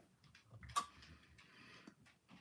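A few faint clicks and light handling noises, with one sharper click a little under a second in: small objects being moved about on a hobby bench.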